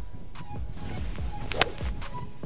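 Hybrid club striking a golf ball, one sharp crack about one and a half seconds in, over low wind rumble on the microphone. The ball is caught cleanly out of the middle of the clubface.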